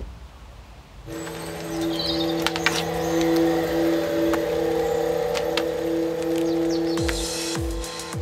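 Electronic intro music for a logo sting: a held synth chord with one pulsing note comes in about a second in and ends near the end with a falling sweep.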